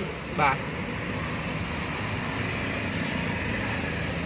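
Steady, even background noise, a low rumble with hiss, with one brief spoken word about half a second in.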